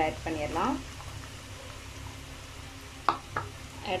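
Chopped onions sizzling in hot oil with garlic in a pan, a steady frying hiss, broken by two sharp clicks about three seconds in, a spatula knocking the pan.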